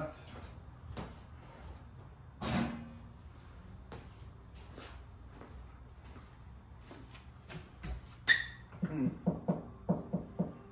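Handling noises on a workbench over a low steady hum: scattered light knocks, one louder scrape about two and a half seconds in, and near the end a sharp metallic click with a brief ring, followed by a quick run of short taps, about three or four a second.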